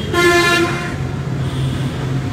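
A vehicle horn sounds once, a single short toot of under a second. A motor vehicle's engine keeps running underneath with a steady low hum.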